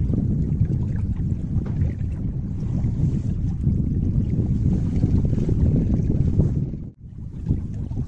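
Wind buffeting the microphone: a steady low rumble that cuts out briefly about seven seconds in.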